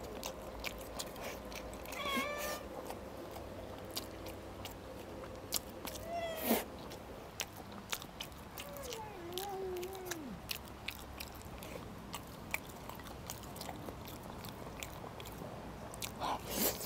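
Close-up eating sounds: chewing red-braised pork belly and rice, with chopsticks clicking against the bowl. A cat meows a few times in the background: short calls about two seconds in and again around six seconds, then a longer meow falling in pitch near the middle.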